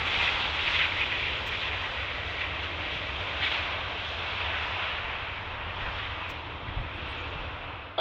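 Boeing 757's jet engines running as the airliner rolls out along the runway after touchdown; a steady roar that slowly fades as it moves away.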